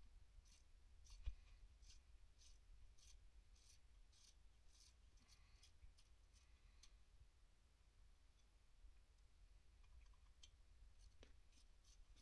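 Near silence with faint, evenly spaced ticks from a ratchet wrench working engine bolts loose, about two a second, and one louder click a little over a second in.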